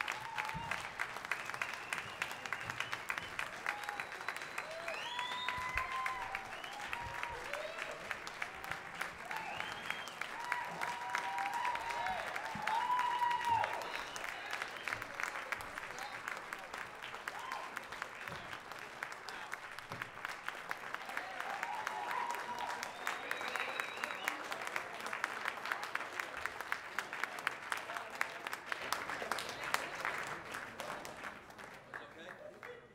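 Audience applauding a live band, with cheers and whoops from the crowd rising over the clapping at several points.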